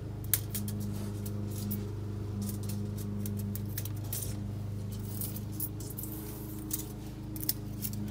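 Thin metal shim strips, one hundredth of a millimetre thick, being handled and pulled from a rack: scattered light metallic clicks and ticks over a steady low hum.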